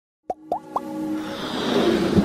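Intro sting for an animated logo: three quick pops, each gliding up in pitch, about a quarter second apart, then a music build-up that swells louder.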